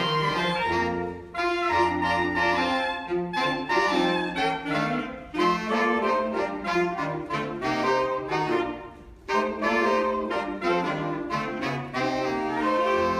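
A saxophone ensemble, including a baritone saxophone, playing a tune together in several voices, with short breaks between phrases about a second in, about five seconds in and about nine seconds in.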